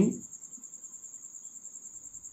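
An insect trilling steadily: a high-pitched, fast-pulsing chirr of about a dozen pulses a second.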